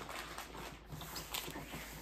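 Rustling and soft knocks of a fabric insulated lunch bag being handled and packed, with a cloth bundle pushed into its top.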